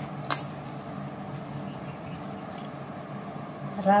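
A hand working flour in a stainless steel bowl, with one sharp metallic click shortly after the start against a steady low hum in the room. A woman says one word at the very end.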